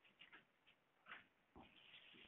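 Near silence: room tone, with a few faint short noises about a second in and near the end.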